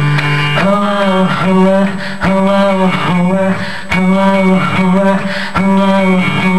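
Live guitar playing: chords strummed in a steady repeating pattern, each struck about every 0.8 seconds and left to ring.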